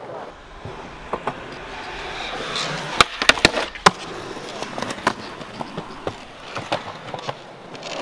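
Skateboard wheels rolling on rough asphalt, the rolling building up and then broken about three seconds in by a quick run of four sharp clacks of the board as a trick is popped and landed. A few lighter board clacks follow later.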